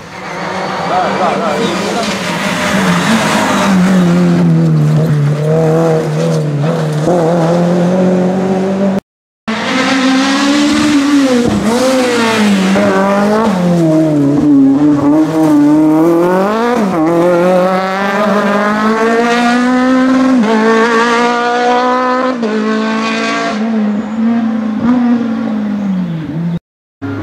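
Rally car engines driven hard on a stage, revs rising and dropping again and again as the cars brake and accelerate past. A short silent cut about nine seconds in separates two passes.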